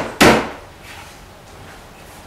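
A single sharp knock on a cabinet side panel just after the start, struck by hand from above to seat the panel into the face frame's dados.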